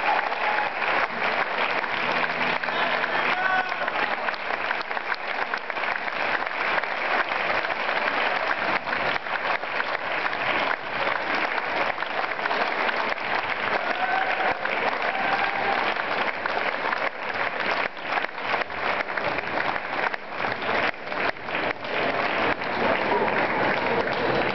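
Audience applauding steadily, a dense mass of many hands clapping.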